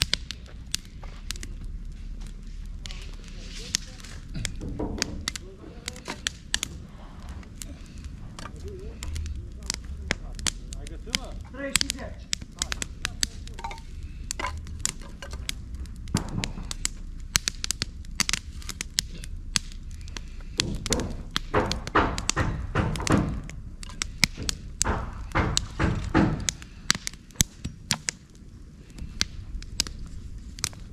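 Many irregular sharp knocks and clicks, with indistinct voices for a few seconds about two-thirds of the way through.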